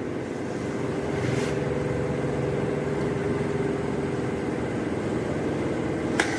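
Soda fountain dispenser running with a steady motor hum: a low drone with a few steady higher tones.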